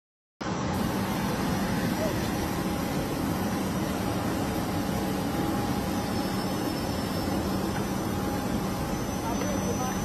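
Steady, unbroken noise of a private jet's engines running on the apron, with a faint steady hum beneath it.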